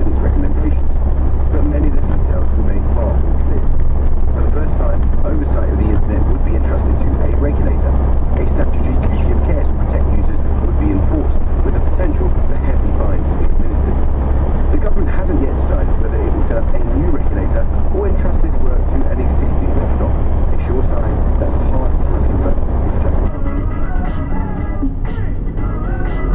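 Steady low rumble of a Ford Transit van's engine and tyres heard inside the cab at motorway speed, with muffled radio talk underneath.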